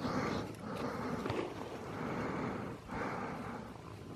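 Long-haired domestic cat purring steadily while being scratched, the rasping purr swelling and dipping with each breath about once a second.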